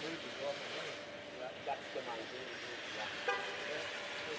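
Steady hiss of factory-floor background noise with faint, indistinct talk under it, and one sharp click about three seconds in.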